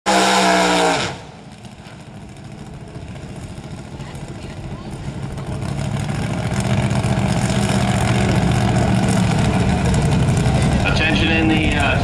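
Fuel-injected engine of a Fiat altered drag car revving hard during a burnout for about the first second, then cutting off suddenly. It then runs at low revs, a steady drone that grows louder over several seconds and holds. A public-address voice starts near the end.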